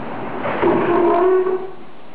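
A person's voice making one drawn-out sound held at a steady pitch, lasting about a second and ending sharply a little before the end.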